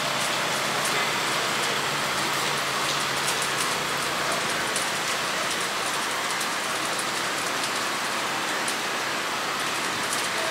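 Steady rain falling on a wet street, with fine drops ticking throughout. Under it is the low running of a city bus idling as it edges forward close by.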